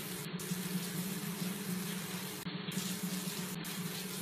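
Water running steadily in a thin stream from above into a plastic baby bathtub.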